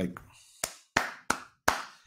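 A man clapping his hands four times in an even rhythm, about three claps a second, in admiration.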